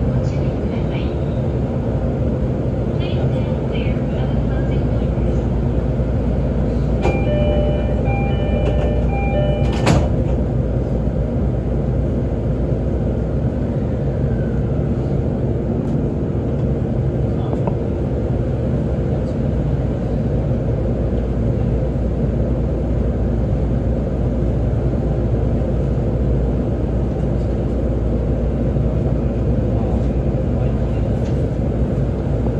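Steady hum of a JR East E531 series electric train's onboard equipment while it stands at a station. About seven seconds in, an electronic chime repeats for about three seconds and ends with a sharp thump. Near the end the train starts to pull away.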